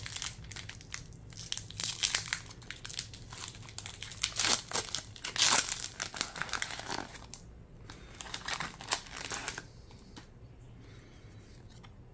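Foil booster-pack wrapper being torn open and crinkled by hand as the cards are pulled out. It is an irregular crackling, loudest about halfway through, that dies away about ten seconds in.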